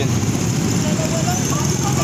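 A motor vehicle's engine idling with a steady low rumble.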